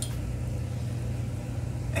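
Citric acid solution at a rolling boil in a water distiller's electric boiler pot, descaling the mineral deposits left by tap water: a steady low rumble with a faint hiss of bubbling.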